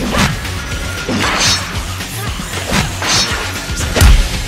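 Fight sound effects from a cartoon brawl: a few swishing blows, each ending in a hard punch impact, over a dramatic music score.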